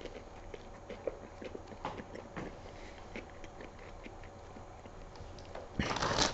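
A person chewing a mouthful of burger close to the microphone: soft, irregular small wet clicks of the mouth. Near the end there is a brief, louder rustle.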